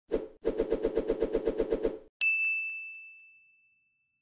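Logo intro sound effect: a fast run of short pulses, about nine a second, lasting under two seconds, then a single bright bell-like ding about two seconds in that rings out and fades.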